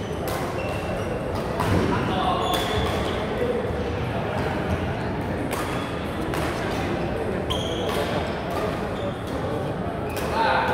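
Badminton rackets striking a shuttlecock in a series of sharp hits during a doubles rally, with brief shoe squeaks on the court floor, in a large echoing sports hall full of other players' voices.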